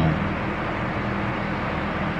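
Electric fan running steadily: an even rushing hiss with a faint low hum.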